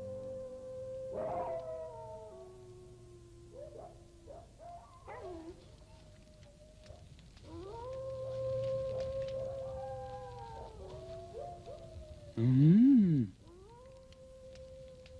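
Canine howling: long, drawn-out howls that glide up, hold, and then drop, in two rounds with short yipping calls between, over a low hum. Near the end comes a loud, brief pitched swoop, up and back down.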